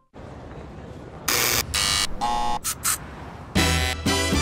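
Door-entry intercom buzzer sounding in about five short bursts over a steady background hiss. Music with a beat starts near the end.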